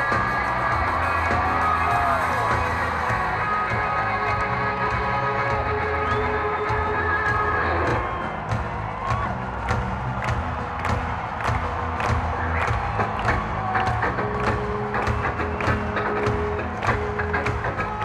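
Live rock band music in an arena with the crowd cheering. About eight seconds in, the full band sound drops away to a steady, sharp percussive beat, with crowd noise still under it.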